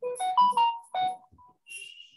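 Short electronic notification chime: a quick run of about five clear notes that steps up in pitch and then back down, over in just over a second.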